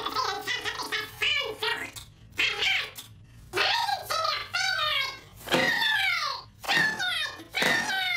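Speech only: a man shouting angrily in German, in a string of outbursts with short breaks between them.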